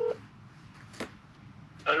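A steady electronic beep cuts off just after the start, followed by low room sound with a single sharp click about a second in; a voice begins near the end.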